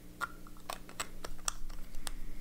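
About half a dozen light, sharp clicks and taps from handling a fountain pen and a plastic traveling inkwell, small hard parts knocking together.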